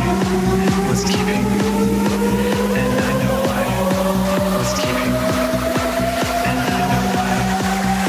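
Minimal techno: a steady kick-drum beat of about two beats a second under a repeating bass line, with a long tone rising slowly in pitch across the whole stretch.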